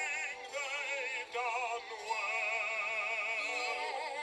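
Music with operatic-style singing: long held notes with a wide, wavering vibrato, played through a television's speaker.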